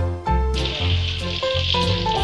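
Background music with a beat, and from about half a second in, the steady sizzle of sliced shallots frying in hot oil.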